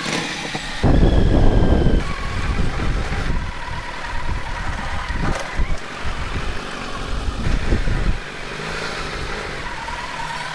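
A Kawasaki Z900's inline-four engine on the move at low speed, heard from the rider's seat over a heavy, uneven low rumble while the bike crosses a rough, broken road surface. The rumble is loudest about a second in, and the sound settles to a steadier, quieter engine note for the last couple of seconds.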